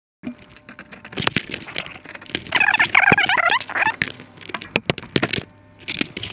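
Clicks, knocks and rattles of hard plastic and metal parts as the opened Sharp VCR is handled, with a brief wavering pitched sound about two and a half seconds in.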